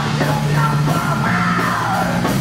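Live industrial metal band playing: a yelled vocal line, held from shortly after the start, over a sustained low guitar part.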